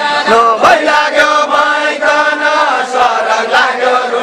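A group of men and women singing a Deuda folk song together, in a chant-like melody with long held notes.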